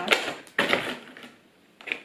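A cardboard advent calendar door being pried and torn open by hand: two rough scraping tearing bursts in the first second, then a short pause and a click near the end.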